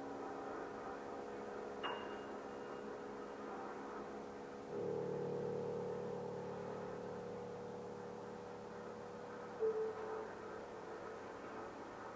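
Grand piano playing slow, sparse notes that are left to ring and fade: a short high note about two seconds in, a chord with low bass notes about five seconds in that rings on and slowly dies away, and a single brief note near ten seconds.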